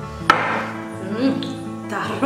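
Background music with a steady melody, and a sharp clink about a third of a second in as a serving spoon knocks against a glass bowl of curry, with a fainter tap near the end.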